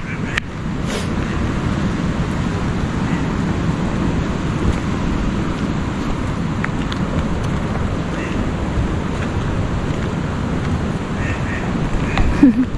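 Wind on the microphone: a steady, continuous low rush.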